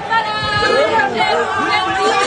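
Many voices of a crowd at once, talking over one another with no single voice standing out.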